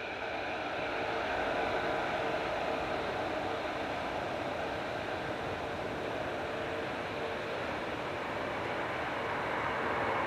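Airbus A380's jet engines running as it lines up on the runway for takeoff: a steady rush of engine noise with a faint hum.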